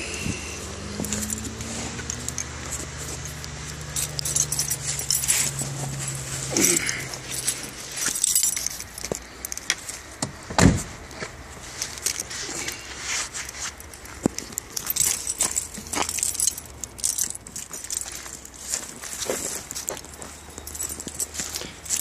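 Keys jangling and gear being handled, with a low steady hum over the first several seconds and one loud thump about ten seconds in, then rustling and footsteps.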